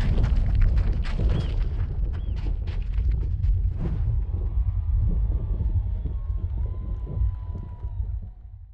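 Title-sequence sound design: a heavy, continuous low rumble with many sharp clicks and crunching hits over it, thinning out in the second half, where a faint thin tone holds.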